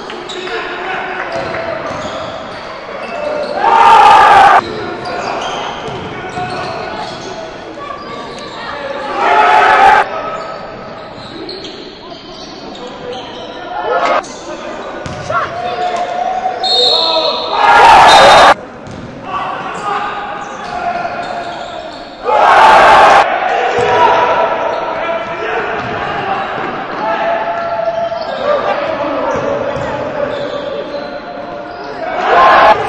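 Indoor basketball game echoing in a large gym hall: the ball bouncing on the court and players' voices. Four loud bursts, each about a second long, stand out over it.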